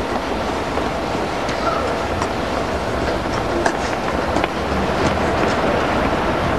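Steady running noise of a moving vehicle: a low rumble with scattered clicks and rattles over it.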